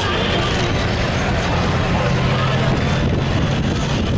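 A 1984 Dodge pickup's engine running under heavy load as it drags a weight-transfer pulling sled through the dirt: a steady, loud low drone that does not let up.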